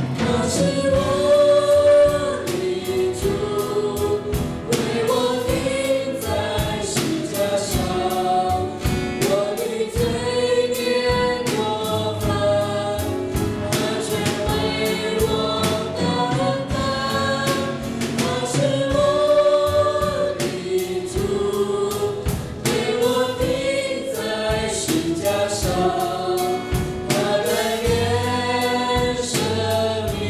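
A church worship band performing a Chinese worship song: several voices singing together into microphones over piano, acoustic guitar and a drum kit keeping a steady beat.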